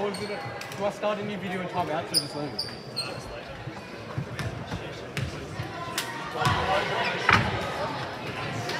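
Basketball bouncing on a hardwood gym floor, sharp thuds with a hall echo, mixed with voices and a few short high squeaks of sneakers on the court.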